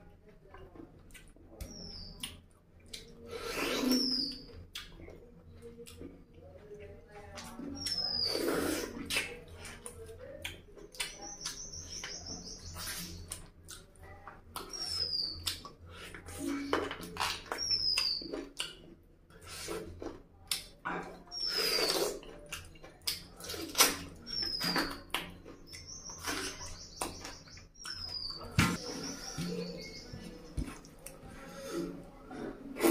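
Close-miked eating sounds of curry and rice eaten by hand: chewing and smacking mouth noises with irregular clicks and a few louder bursts. Behind them a small bird chirps over and over, short high falling chirps every second or two, with two longer buzzy trills.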